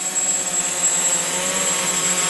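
Electric hexacopter's six motors and propellers running steadily in a low hover, an even whirring hum.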